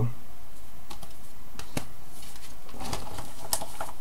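Trading cards and plastic binder sleeves being handled: a few scattered light clicks and rustles over a steady low hum.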